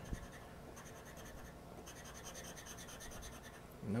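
Scratch-off lottery ticket being scratched with a flat tool. The fine rasping of the coating comes in fast, even, faint strokes for most of the stretch.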